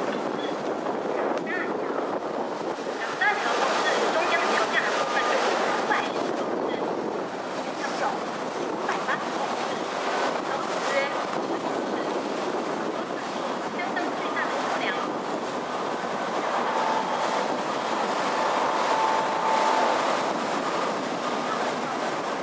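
Harbour water rushing and splashing along the hull of a moving sightseeing ship, with wind buffeting the microphone and passengers' voices faintly in the background.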